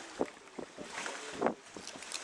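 Knife cutting and scraping through the flesh of a whole fish on a wooden cutting board, a few short, wet cutting sounds, the loudest about a fifth of a second in and near a second and a half in, over wind on the microphone.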